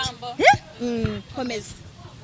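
A woman's voice: a sharp upward yelp about half a second in, followed by a few short vocal sounds that stop well before the end.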